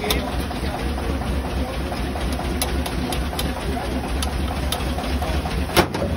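Knife chopping green chillies on a steel griddle: a few sharp metallic taps at uneven intervals, the loudest near the end, over a steady low rumble.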